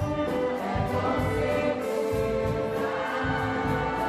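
Choir singing together with a small orchestra of strings and winds, held notes over a regular pulsing beat in the bass.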